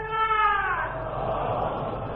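Voices chanting in unison on one long held note that falls away under a second in, leaving a steady murmur and hiss from the old recording.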